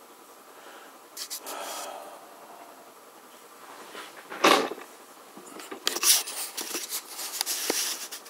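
Scattered scraping and rubbing handling noises with one sharp knock about halfway through, then a busier run of scrapes and clicks near the end.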